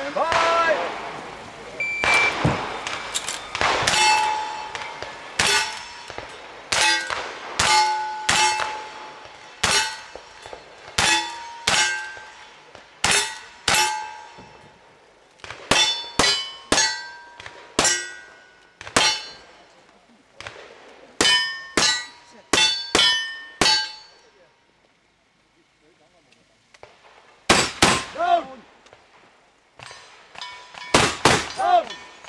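A fast string of black-powder gunshots, each followed by the ringing clang of the steel target it hits. The shots come about one or two a second, pause for about three seconds near the end, then a few more follow close together.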